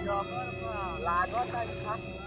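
A high, wavering voice without clear words, over a steady hum.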